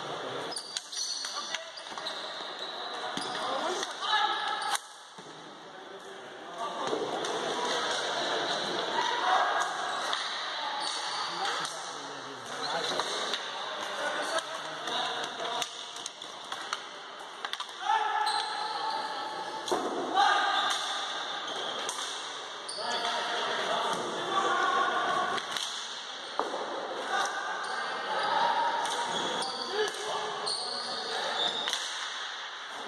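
Ball hockey play on a sports-hall floor: sticks clacking against the ball and the floor, with players calling out, all echoing in the large hall.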